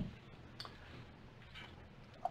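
Quiet room tone in a pause between speech, with one faint, short click a little over half a second in.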